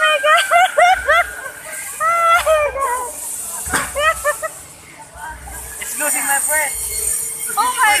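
A woman laughing and shrieking on a spinning amusement ride: runs of short, high-pitched whoops and squeals, easing off briefly in the middle and picking up again near the end. A low rush on the microphone recurs about every second and a half.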